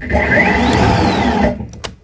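Ryobi 40V brushless cordless snow thrower running, loud, with a whine that rises then falls in pitch. The auger shaft is bent. It cuts off about a second and a half in, followed by a couple of clicks.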